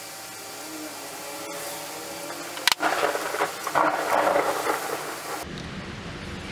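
Rubbing and scraping while cleaning old grime off a ball-peen hammer by hand. After a sharp click about two and a half seconds in, a rough, uneven rubbing runs for a few seconds and then stops abruptly near the end.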